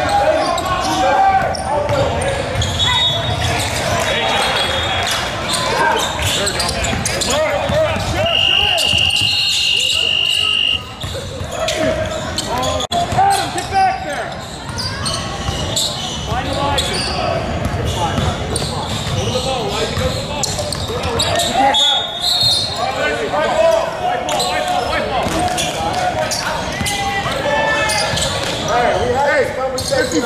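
Basketball being dribbled on a hardwood gym floor, echoing in the hall, with voices calling out over the play. About eight seconds in, a referee's whistle sounds one long steady blast of over two seconds, stopping play for a foul and free throws.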